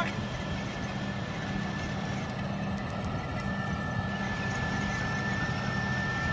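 Tractor engine running steadily under load, driving a power harrow and seed drill combination as its tines work the soil, with a steady high whine over the machinery noise.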